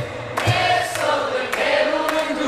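Live acoustic band: a voice singing a melody over strummed acoustic guitar, with a steady cajon beat.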